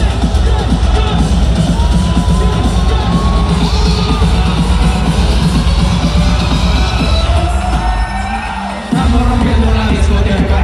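Loud live music with a heavy bass over an arena sound system, heard from among the crowd, with crowd cheering. The bass drops out for about a second near the end, then comes back in.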